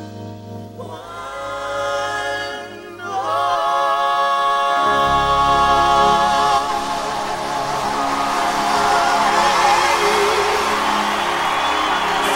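A vocal group singing long, sustained notes in harmony with a live band, with more voices joining in and the sound swelling louder about three seconds in.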